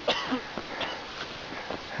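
A short breath-like noise from the person filming, right at the start, over a steady faint hiss.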